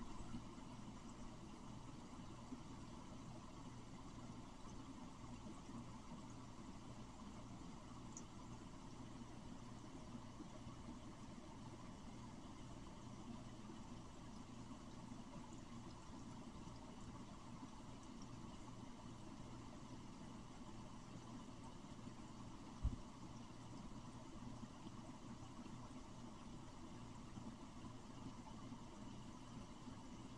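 Faint, steady low hum of room tone, with one short knock about three-quarters of the way through.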